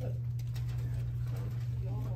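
A steady low hum with faint murmuring voices over it and a few small knocks.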